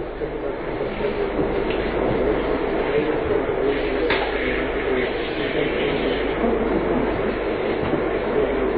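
Steady hiss and rumble of an old, muffled lecture-hall recording, with an audience member's question too faint and indistinct to make out, and one sharp click about four seconds in.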